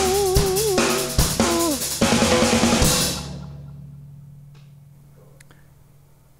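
Live rock band finishing a song: a female voice sings held notes with vibrato over drums and electric guitar, then a final loud band hit about two seconds in. The cymbals ring on and fade away over the next few seconds until it is nearly quiet.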